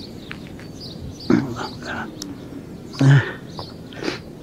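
Two short voiced cries, one about a second in and a louder, lower one near three seconds, over a faint steady background hiss.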